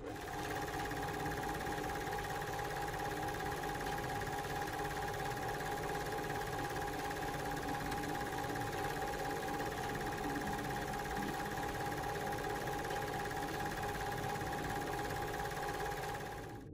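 A steady hum with a high whine held on one pitch over a constant hiss. It starts abruptly and cuts off suddenly.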